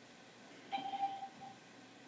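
A short steady electronic beep, held about half a second, followed by a brief second blip.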